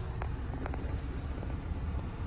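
Uneven low rumble of wind buffeting the microphone, with two faint clicks early on.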